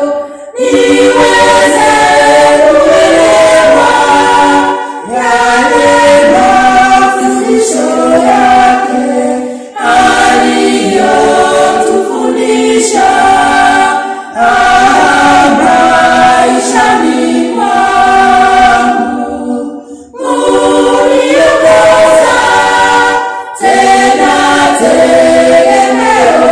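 Small church congregation singing a hymn together, unaccompanied, in phrases broken by short pauses for breath.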